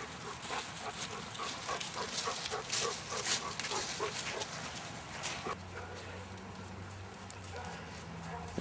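Dogs sniffing and moving about on grass: a run of short, sharp snuffs and rustles, thinning out about two-thirds of the way through. A faint steady low hum sets in at that point.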